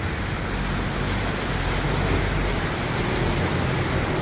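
Canal water-taxi boat cruising past the pier: a steady low engine drone under the rushing splash of its bow wake against the landing, swelling a little toward the middle.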